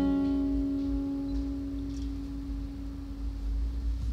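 Acoustic guitar's final chord ringing out and slowly fading at the close of a song.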